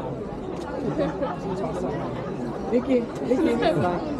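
Crowd chatter: several people talking at once, their voices overlapping with no single speaker standing out.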